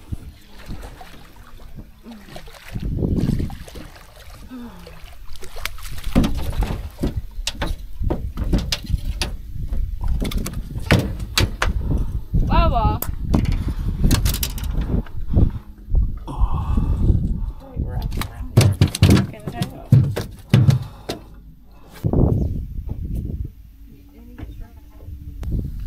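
An irregular run of knocks and thumps on a boat deck as a redfish is landed and handled, with voices now and then.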